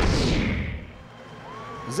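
The tail of a whoosh-and-boom logo transition sound effect, falling and fading away over the first second. Quiet stadium crowd sound follows, and a man's narration begins at the very end.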